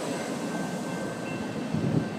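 A CTA 'L' rail car standing at the platform gives off a steady running hum with a faint high whine. A brief soft low thump comes near the end.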